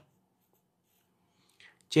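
Near silence, then a brief faint scratch of a pen writing on paper near the end.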